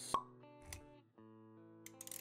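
Intro music with held plucked-string notes, punctuated by a sharp pop a moment in, the loudest sound, and a soft low thud just after.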